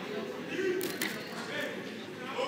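Low murmur of voices in a hall, with a short cluster of sharp clicks a little under a second in.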